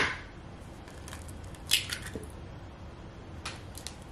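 A chicken egg being cracked and its shell pulled apart over a plastic blender jar: a few brief, soft crackles and clicks, the clearest a little under halfway in.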